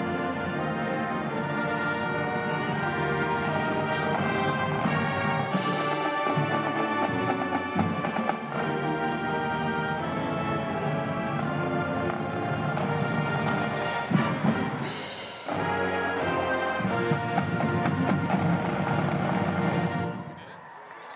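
Band accompaniment of a school alma mater, with sustained brass and timpani chords. A crash comes about five seconds in and another about fifteen seconds in, and the music stops at the end.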